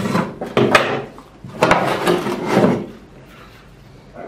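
Rough scraping and rustling as a bonsai's root ball is handled and worked, in two bursts of about a second each.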